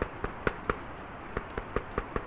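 Rain ambience: a steady hiss of rain with irregular sharp ticks of drops landing close by, about five a second.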